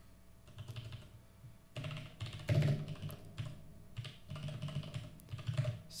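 Typing on a computer keyboard: irregular runs of keystrokes with short pauses between them, as text is entered and edited in a code editor.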